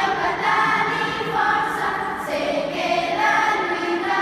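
A children's choir singing together, holding sustained notes that step to a new pitch about once a second.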